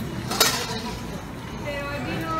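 A single sharp clink of dishes about half a second in, over the low chatter of a restaurant dining room.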